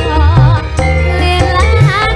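A female sinden singing a wavering, ornamented melody into a microphone over loud band accompaniment with deep, heavy drum beats.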